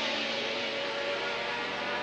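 Engines of 1981 Formula One racing cars in the trackside sound of a TV broadcast: a steady drone, with a high whine gliding down at the start.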